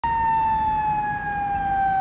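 Fire rescue squad truck's siren sounding as it approaches, one long tone sliding slowly down in pitch.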